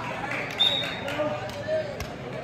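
Many overlapping voices of players and spectators shouting around a kabaddi court during a tackle, with a short, high whistle blast about half a second in.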